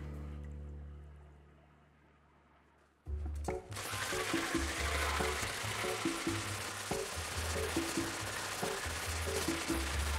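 Electric hand blender with a whisk attachment starting up about four seconds in and running steadily, beating egg yolks and a whole egg in a stainless steel bowl. Background music plays throughout and dips to near silence just before the whisk starts.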